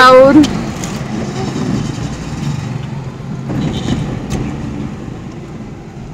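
Steady low rumble inside the cabin of a running car, with a single sharp click a little over four seconds in.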